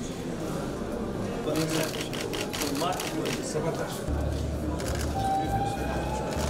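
Indistinct chatter of several people talking at once in a room, with runs of quick sharp clicks about a second and a half in and again near the end, and a low steady hum joining about two-thirds of the way through.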